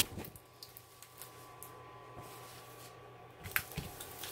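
Hands handling and smoothing a diamond painting canvas under its plastic film: a sharp thump at the very start, then soft, faint handling noises and a light click about three and a half seconds in, over a faint steady hum.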